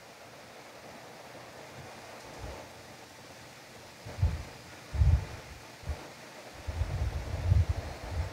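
Faint steady hiss of a quiet, open microphone, then from about four seconds in a string of short, low rumbling thumps on the microphone, coming thicker near the end.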